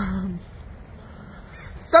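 A voice trails off just after the start, then a quiet lull of faint low rumble, and another voice starts abruptly near the end.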